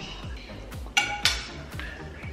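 Background music with a steady beat. About a second in, a metal fork clinks against a dinner plate, a sharp ringing clink with a smaller one just after.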